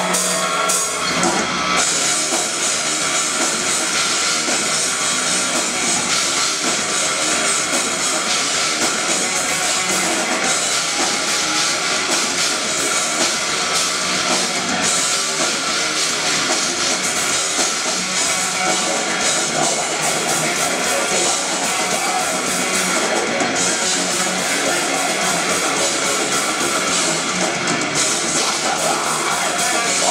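Melodic death metal band playing live at full volume: distorted electric guitars, bass, keytar and a driving drum kit in a dense, steady wall of sound. The full band kicks in about a second in.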